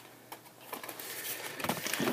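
Faint rustling of cardboard and paper packaging being handled, with a few light clicks.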